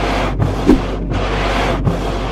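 Car windscreen wipers sweeping back and forth over frosted, wet glass: a harsh hiss broken by a short gap at each turn of the sweep, about every three-quarters of a second, with a single light knock early on. Underneath is the low, steady hum of the idling car.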